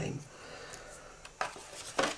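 Black card stock being handled and folded on a wooden table: soft rubbing of the card, with two short sharp taps near the end.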